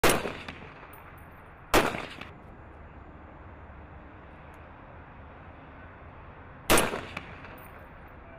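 Three rifle shots from a U.S. M110 7.62 mm semi-automatic sniper rifle: one at the very start, one just under two seconds in, and one nearly seven seconds in. Each is a sharp crack that dies away over about half a second.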